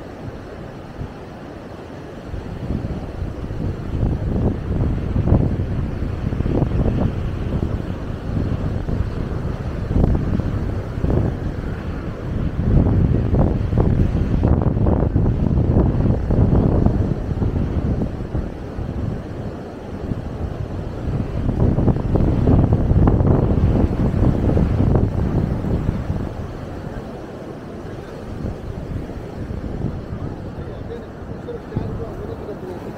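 Sea wind buffeting the microphone in low, gusty rumbles that swell and ease, loudest through the middle and again a little past two-thirds of the way in, over the wash of surf breaking along the beach.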